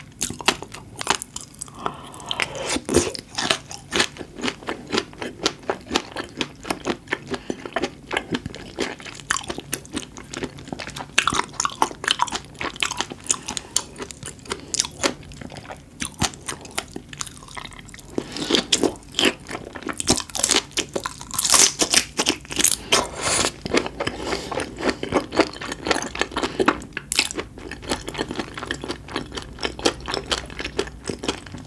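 Close-miked chewing and biting of raw seafood, a raw oyster and then a raw red shrimp: a dense, irregular run of wet clicks and mouth smacks, busiest a little past the middle.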